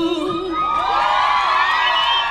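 A held sung note from the stage music ends about half a second in. A concert crowd then cheers and screams, many high-pitched voices at once, as the song finishes.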